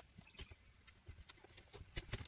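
Near silence with a few faint, scattered clicks from a plastic wiring-harness connector and its wires being handled.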